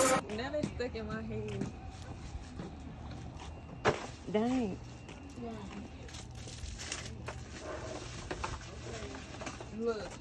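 Faint voices of people talking a little way off, in short scattered phrases, over a low steady hum, with one sharp knock a little before four seconds in.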